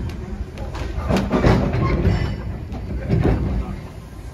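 Narrow-gauge train running over jointed track and points, heard from inside the carriage: a low rumble with irregular clanks and knocks from the wheels and couplings.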